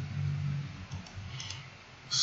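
A couple of faint computer mouse clicks about one and a half seconds in, over low room noise, as a sketch line is placed in CAD software.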